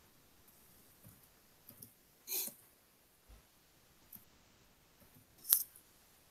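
Quiet room tone with a few small sounds: a brief rustle about two seconds in and a single sharp click near the end.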